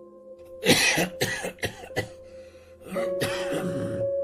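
A person coughing in a fit of about five harsh coughs, then more throat-clearing or coughing near the end, over a steady sustained musical drone.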